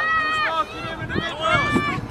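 Young children shouting and calling out in high voices: a long drawn-out call at the start, then several shorter calls.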